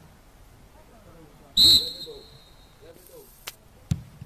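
One short, loud blast of a referee's whistle about one and a half seconds in, the signal for the penalty kick to be taken. Just before the end there is a thud as the ball is kicked.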